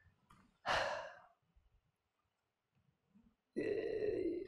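A man's single audible sigh, a breath out, about a second in, then a short hummed 'mm' near the end.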